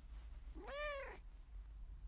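A single cat meow about half a second in, rising then falling in pitch.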